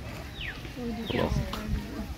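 Hoolock gibbon calling: two short, high calls that slide steeply downward in pitch, about half a second apart.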